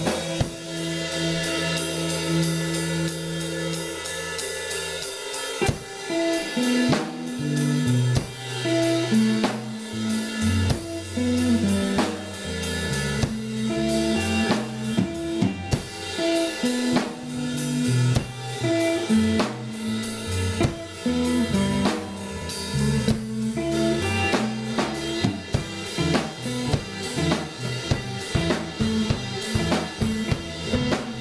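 Live band playing, with drum kit, electric bass guitar and electric guitar. Held low notes ring for about the first five seconds, then the bass moves into a busier line under steady drumming.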